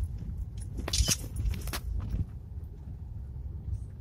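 Low rumble of a Suzuki Swift hatchback rolling over a rough dirt road, heard from inside the cabin. A few sharp knocks and rattles come from the bumps, the loudest about a second in.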